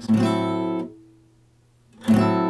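Acoustic guitar: one strummed chord that rings for under a second and is then cut short as the fretting hand relaxes its pressure on the strings without leaving them, the muted, clipped down-stroke of la pompe gypsy-jazz rhythm. The next chord is struck right at the end.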